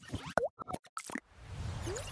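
Cartoon-style sound effects for an animated logo: a quick run of pops and plops with a short upward boing, then a swelling whoosh with a low rumble from a little past halfway.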